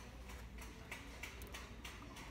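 Faint clicks, about three a second, over a low steady hum.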